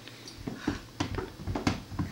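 A few short, soft taps and knocks as a baby squirms on a rug and tips over onto her side and back.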